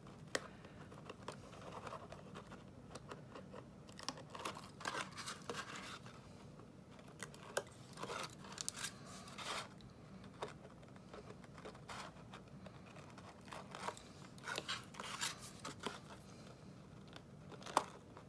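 Release liners being peeled off adhesive tape strips on card stock, worked loose with a pointed pick tool: faint, scattered scratching and crinkling of the paper liner, with a few louder peels.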